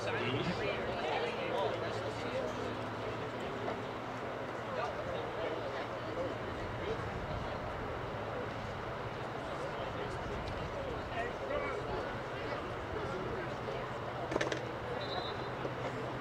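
Outdoor ambience at a soccer field: faint, scattered voices of players and spectators over a steady low hum, with no loud single event.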